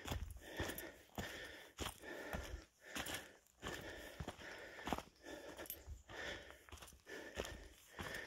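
Footsteps crunching on dry eucalypt leaf litter and dirt along a bush walking track, at a steady walking pace of about one step a second.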